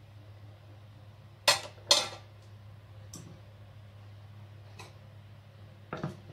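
Two sharp clinks about half a second apart, a kitchen knife and a ceramic plate being handled, followed by a few faint knocks.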